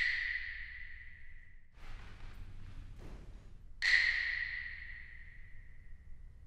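A high, bell-like ping struck twice, once at the start and again about four seconds in, each ringing out and fading over about two seconds. It is an example of how a room's reflective surfaces colour a sound picked up by an ambisonic microphone.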